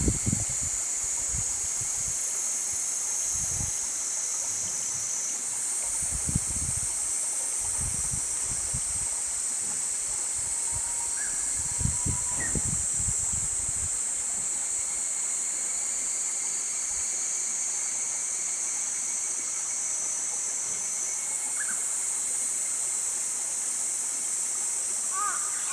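Evening outdoor ambience: a steady high-pitched chorus of insects over a faint wash of running water. Low rumbles of wind on the microphone come and go in the first half, and there are a few faint short chirps.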